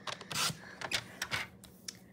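Designer series paper being shifted and cut on a sliding-blade paper trimmer: a short rasping slide about half a second in, then several light clicks and taps from the trimmer.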